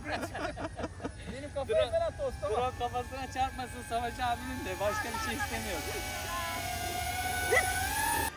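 DJI Avata 2 FPV drone's three-blade propellers whining in flight, a steady tone that rises in pitch and grows louder over the last few seconds, with people talking nearby. The three-blade propellers replaced the Avata 1's five-blade design to cut the noise.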